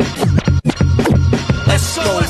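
Hip hop beat with heavy bass and repeated DJ turntable scratches, cut by a brief dropout just over half a second in.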